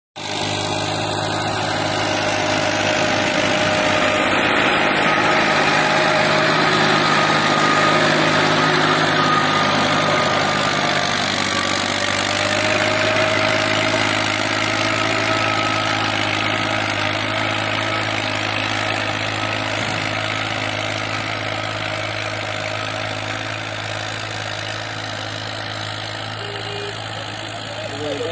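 Tractor engine running steadily under load while pulling a rotary tiller through the soil. It grows louder over the first several seconds, then fades slowly as the tractor moves away.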